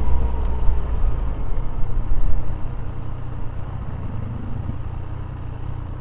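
Motorcycle engine and wind noise picked up by a helmet-mounted microphone while riding, a steady low rumble that drops off about two and a half seconds in as the bike slows to pull in and stop.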